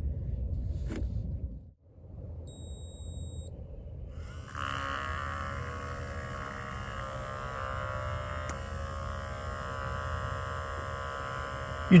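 Outin Nano portable espresso machine: a single electronic beep lasting about a second, then about a second later its electric pump starts with a steady buzzing hum as the heated water is pushed through the pod and espresso begins to pour.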